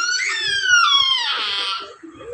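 A baby's drawn-out, high-pitched squeal, its pitch falling, then stopping just before the end.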